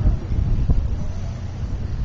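Wind buffeting the camera's microphone: an uneven, gusty low rumble.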